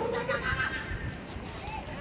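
Shouting voices at a youth football match: a long, wavering high shout at the start and a short call near the end, over the open-air noise of the pitch.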